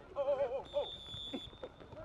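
Wavering shouts from players on the football pitch, with a faint, steady high-pitched whistle tone lasting about a second in the middle.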